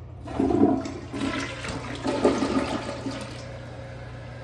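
Delta tank toilet flushing. The water rushes in about a third of a second in, swells again about two seconds in, then eases off, over a steady low hum.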